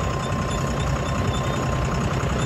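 John Deere 5310 tractor's three-cylinder diesel engine running steadily while pulling a laser land leveller, heard from the driver's seat, with a constant thin high tone over the engine sound.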